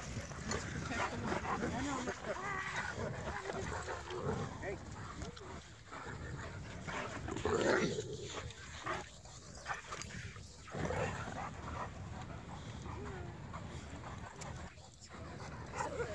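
Irish wolfhounds vocalizing as they chase each other in play, with occasional barks.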